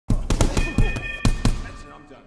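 A quick run of boxing-glove punches landing, about seven hits in the first second and a half, with a voice under them.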